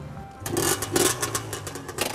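Small motorbike engine started and revved hard twice, about half a second in, then running with uneven sharp pops; music plays underneath.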